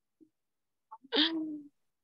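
Silence broken about a second in by one short wordless vocal sound from a woman: a breath, then a single held tone for about half a second.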